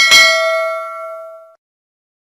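A notification-bell 'ding' sound effect: one bright bell tone that opens with a sharp click, rings on and fades for about a second and a half, then cuts off.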